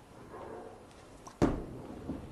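A bowling ball is released and lands on the lane with a single sharp thud about one and a half seconds in, then rolls away with a low rumble.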